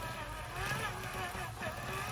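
Small electric motor with a roller-chain drive powering a homemade cart's axle, its whine rising and falling in pitch as it runs.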